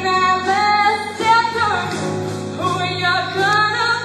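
A young woman singing a song over instrumental backing, holding long notes that slide up and down in pitch.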